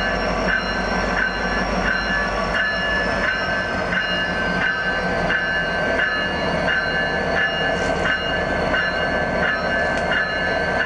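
Locomotive bell ringing steadily, about three strikes every two seconds, over the low rumble of Union Pacific 1943, an EMD SD70ACe diesel-electric, rolling slowly past.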